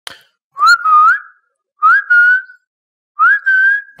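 Whistling: three short phrases, each gliding up in pitch and then held, with short pauses between them.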